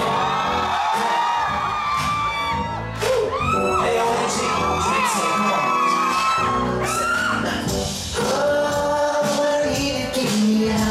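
Live pop concert music in a large hall: a backing track with a male voice singing, and occasional whoops from the audience.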